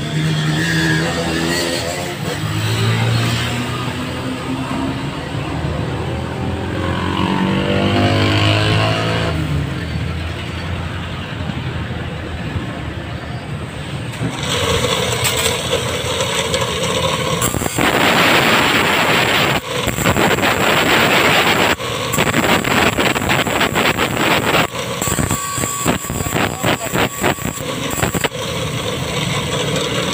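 A hand saw's teeth being sharpened with a file: a run of short, irregular file strokes on the steel blade in the second half. In the first half a motor vehicle is heard, its pitch rising and falling.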